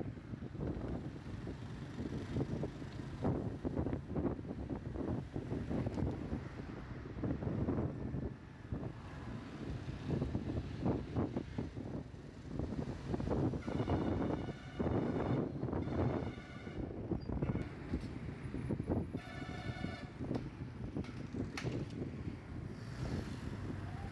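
Road traffic and engine noise heard from a moving vehicle, with wind buffeting the microphone. A vehicle horn sounds briefly twice in the second half.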